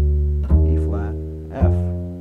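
Upright bass plucked pizzicato, single notes of an F mixolydian scale played about a second apart, each starting sharply and ringing down.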